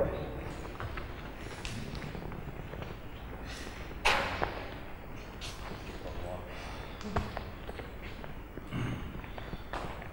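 Quiet room tone of a large sports hall, with scattered footsteps and light knocks on the floor and one sharper thud about four seconds in.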